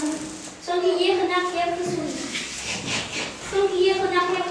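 Children's voices talking, high-pitched, with some words drawn out into held notes.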